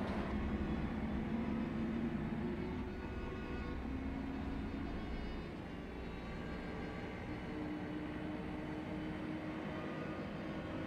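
Double-decker bus driving, heard from inside the upper deck: a steady low rumble with a faint engine hum.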